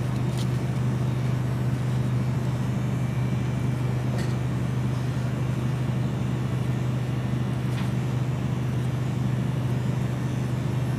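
Electric hair clipper running with a steady low buzz while cutting hair, with a few faint ticks.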